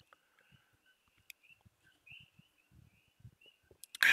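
Near silence, with faint short high chirps, like a small bird calling, repeating through it and a few soft low thumps, most of them in the second half.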